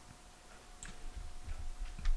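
A few faint, sharp clicks and soft low thumps over a faint steady hum. This is handling noise while a scripture passage is being looked up.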